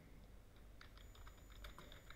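Faint computer keyboard typing: a quick run of key clicks starting about a second in.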